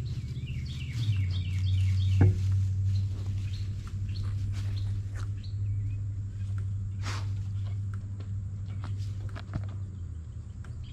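Basset hounds snuffling and rustling through long grass, with short scattered clicks and rustles, over a steady low hum. A songbird chirps a quick run of notes in the first two seconds.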